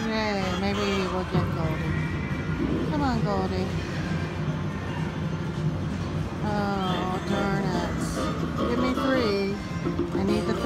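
WMS Gold Fish video slot machine playing its bonus-trigger music, with pitched tones that slide downward several times over a steady low backing.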